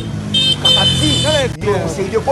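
Street sound of a motor vehicle running with voices over it and a steady high-pitched tone; it briefly cuts out about one and a half seconds in.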